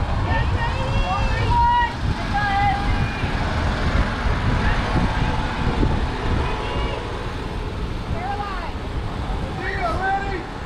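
Wind rumbling on the microphone, with scattered distant calls and shouts from players and spectators across the softball field.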